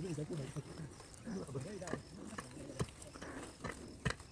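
Indistinct voices talking in two short stretches, followed by a few sharp clicks in the second half.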